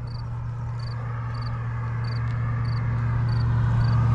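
A dirt bike engine running at steady low revs, growing steadily louder as it comes closer. Over it, a short high chirp repeats about every two-thirds of a second.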